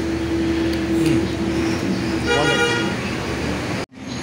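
Street traffic with a steady drone, and a vehicle horn tooting briefly about two seconds in. The sound cuts off suddenly just before the end.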